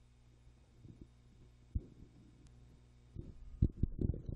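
Faint, muffled keyboard keystrokes as a password is typed into a terminal, heard as short low thumps: a scattered few, then a quick run of them near the end. A low steady hum sits under them.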